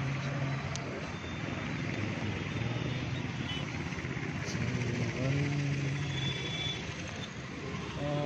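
Steady outdoor rush of road traffic, with a man's voice coming in a few times to hold long sung or chanted notes.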